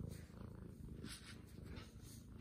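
Domestic cat purring close up: a low, steady purr.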